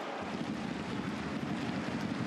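Steady background noise of a football stadium crowd, with no single loud event standing out.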